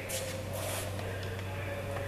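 Steady low machine hum, with a couple of brief soft rustles in the first second.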